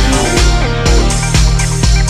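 Deep house track playing: a four-on-the-floor kick drum about two beats a second under a steady bass line and synth chords, with synth notes sliding down in pitch early on.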